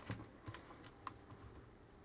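Faint, scattered light clicks and taps of long fingernails and hands on plastic shower gel bottles being handled.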